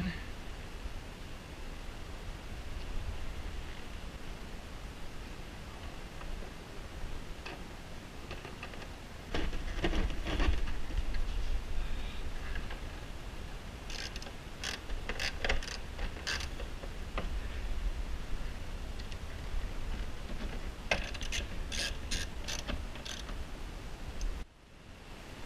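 Clicks, taps and rattles of plastic parts and wiring being handled by hand inside a jet ski's hull compartment during a 12-volt outlet install. They come in scattered clusters about ten seconds in, around fifteen seconds and again near the end, over a low handling rumble.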